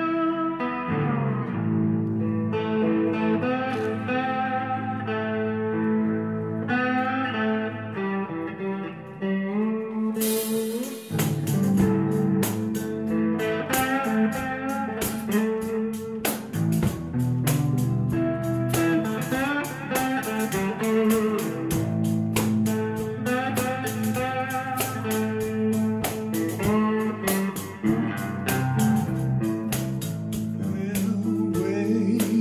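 Blues guitar playing an instrumental passage with no singing. About ten seconds in, drums join with a steady beat of cymbal or hi-hat ticks.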